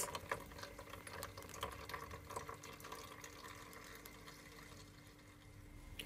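Blended fruit juice trickling and pattering through a strainer into a pot, faint, tapering off toward the end.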